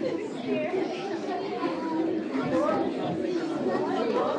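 Many voices talking at once, a general chatter of children and adults in a hall.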